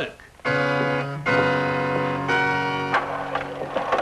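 Music: a short run of held chords that change twice, about a second in and again about two seconds in, then die away shortly before the end.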